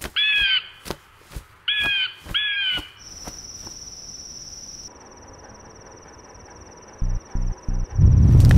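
Three crow caws in the first three seconds, among scattered sharp clicks; then a steady high-pitched tone holds for the rest, with a few low thumps near the end.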